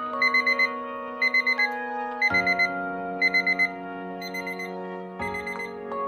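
Round digital countdown timer beeping in groups of four quick high beeps, about one group a second, the last two groups fainter: the alarm signalling that the 25-minute work period has run out.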